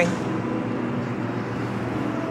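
Steady hum of distant road traffic, an even rumble with no distinct events.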